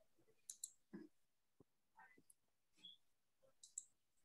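Near silence with a few faint, scattered clicks from working a computer.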